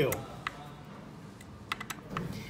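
Small sharp clicks of a hex screwdriver working the rail bolts on a Wanhao D8 3D printer's Z axis as they are loosened: a few scattered clicks, then a quick run of clicks near the end.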